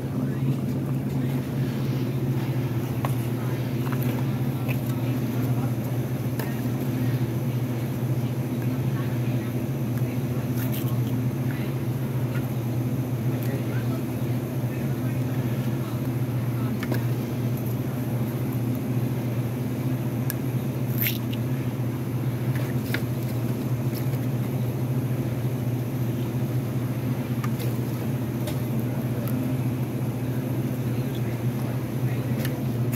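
Steady low hum of convenience-store equipment, with occasional faint clicks and clatters.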